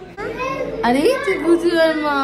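A young child's high-pitched voice talking, with a long drawn-out sound in the second half.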